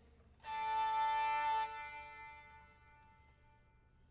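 Hurdy-gurdy sounding one sustained note over its drone, starting suddenly about half a second in, held for about a second and then dying away as the wheel stops.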